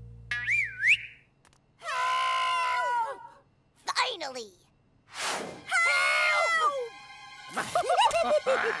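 A cartoon pea character letting out long, drawn-out yells, twice, with a short cry in between. A whistle-like sound effect glides up and down near the start.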